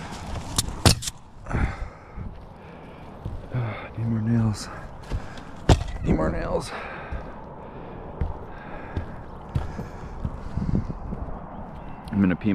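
Sharp knocks and clatter of tools and shingle bundles being handled on a roof, with heavy breathing and a couple of short grunts from a worker who is ill with COVID.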